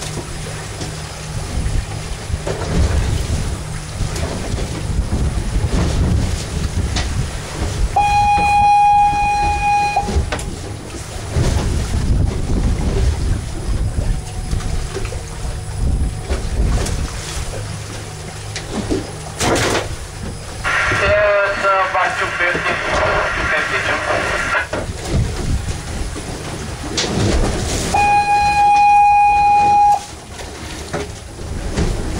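Wind and water noise on an open boat deck over a low steady hum. A steady horn blast of about two seconds sounds twice, about twenty seconds apart, about eight seconds in and again near the end, in the pattern of an offshore platform's fog horn.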